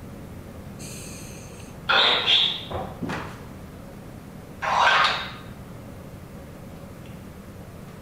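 Unexplained noises from behind the camera in a dark, empty room, heard through the video's sound track: a loud noisy sound about two seconds in, two short fainter ones just after, and another loud one about five seconds in.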